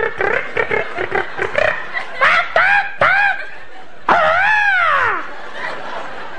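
A man making exaggerated, odd sex noises with his voice: a few short gliding yelps, then one long cry that rises and falls, over audience laughter in a hall.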